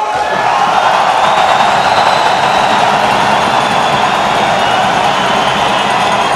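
Large audience in a hall applauding, a dense, steady and loud clapping.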